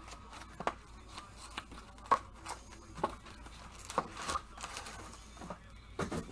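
Gloved hands handling a trading-card box, its plastic wrap and foil packs: light clicks and taps about once a second, with faint rustling.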